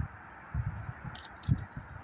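Low muffled thumps and a short rustle close to a handheld phone's microphone, the sound of the phone being handled or buffeted as it is carried.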